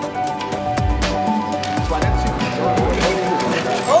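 Background music with a steady beat, with voices mixed in under it.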